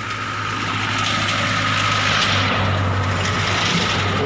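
A motor vehicle running nearby: a steady low engine hum under a rushing noise that swells around the middle and eases off again.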